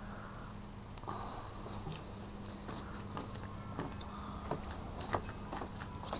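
Faint handling and walking noises, scattered light knocks and rustles, over a low steady hum, as the running pulse motor and camera are carried.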